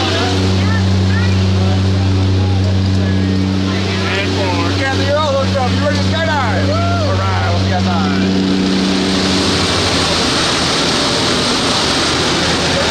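Jump plane's engines and propellers droning steadily in the cabin, with voices raised over them in the middle. About nine seconds in, the drone gives way to a loud rush of wind, as from the open jump door.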